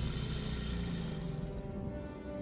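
Ominous film score: a held orchestral chord over a steady low rumble.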